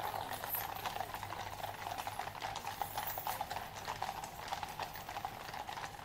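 Hooves of a column of Household Cavalry horses walking on a paved road: a dense, irregular, overlapping clip-clop of many hoofbeats.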